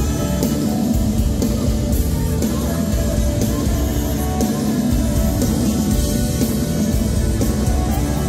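Live pop-rock band playing amplified through a PA: electric guitars, electric bass, drum kit and trumpet, with a steady drum beat.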